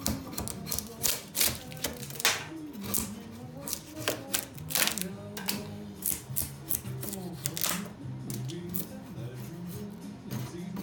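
A long metal file scraping along the bark edge of a wooden slab in quick, irregular strokes, a couple a second, over background music.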